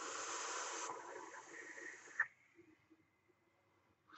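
A long draw through a rebuildable dripping atomizer on a mechanical mod, with its low-resistance flat-wire coil firing: a steady airy hiss for about two seconds, louder in the first second, ending with a short click.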